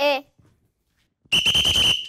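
A whistle blown in one short, loud, steady blast near the end.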